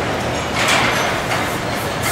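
Continuous machinery din of a stamping-press line, with two louder surges of hissing noise, one about half a second in and one in the second half.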